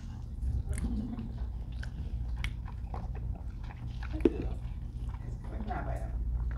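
Close-miked chewing and biting as a man pulls grilled lamb off a kebab skewer with his teeth and chews, with wet mouth clicks and smacks over a low steady hum. A sharp click about four seconds in stands out above the rest.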